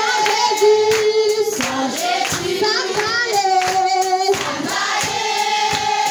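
A congregation singing a hymn together, with hands clapping in time.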